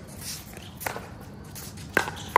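Two sharp pops of pickleball paddles striking the ball, about a second apart, the second the louder. Between them, shoes shuffle on the hard court.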